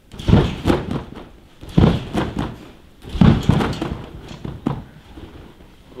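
Several dull thumps, irregularly spaced and heavy in the low end: a gymnast's feet and body landing on padded gym mats.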